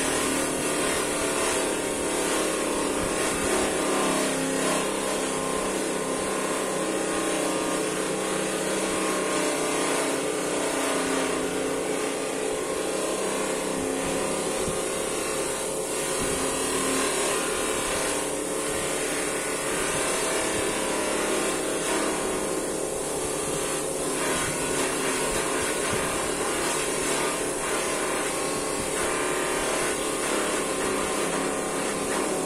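A 700 W bench polisher motor running steadily, with a shell casing held by hand against its buffing wheel.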